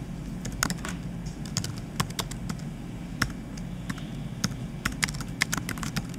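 Computer keyboard being typed on: a run of irregular key clicks with short pauses, a line of code being entered.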